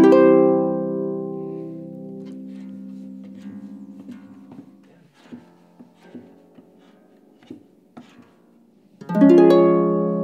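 Pedal harp chord plucked and left to ring, dying away over several seconds, then a run of soft clicks and knocks as the pedals are moved to change key, and a second ringing chord near the end.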